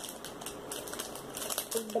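Clear plastic bag crinkling in short, irregular rustles as hands dig into it to pick out glitter loom rubber bands.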